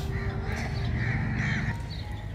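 A crow cawing about four times in quick succession over a low steady background hum.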